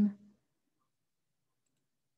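A woman's voice trailing off at the very start, then near silence.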